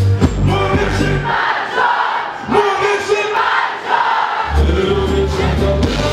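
A song performed live at a club concert through the PA, with heavy bass. About a second in, the beat drops out for roughly three seconds and the crowd's massed voices carry on alone, then the bass comes back in.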